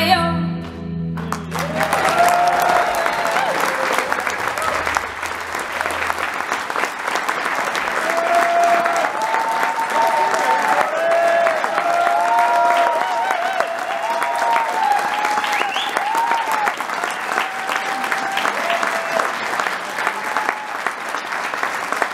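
A final sung note and harp chord end, then an audience applauds with cheers and whoops; the harp's low strings keep ringing under the clapping for the first few seconds.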